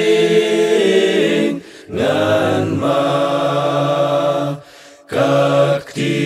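Unaccompanied male choir singing a Khasi hymn in harmony, in long held chords, with two short pauses between phrases about two and five seconds in.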